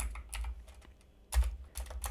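Computer keyboard typing: a handful of separate keystrokes, with one louder key press about two-thirds of the way through.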